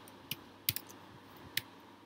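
Computer keyboard keystrokes: about five separate key presses at an uneven pace, typing a short line of code.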